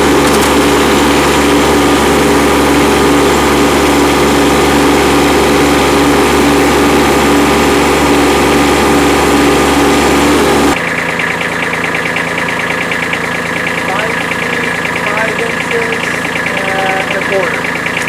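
Kubota B2301 compact tractor's three-cylinder diesel running at raised revs while the front loader lifts a pallet of about 745 lb of weights. About ten seconds in the engine sound drops suddenly to a quieter idle.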